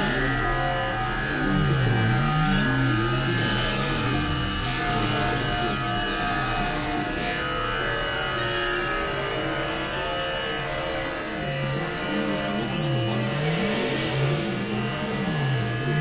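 Experimental synthesizer drone music, played on a Novation Supernova II and a Korg microKORG XL. Low tones swoop down and back up about once every second or so, most clearly at the start and again in the last few seconds, over held tones and a noisy hiss.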